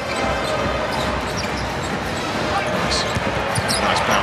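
Game sound from a basketball court: a basketball is dribbled on the hardwood in short repeated thuds. A steady arena crowd murmur runs underneath, with a few short high squeaks near the end.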